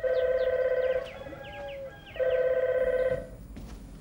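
Desk telephone's electronic ringer ringing twice: two warbling rings about a second long each, a second apart, signalling an incoming call.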